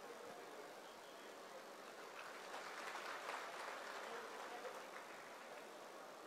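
Faint applause from an audience in a large hall, a little stronger in the middle.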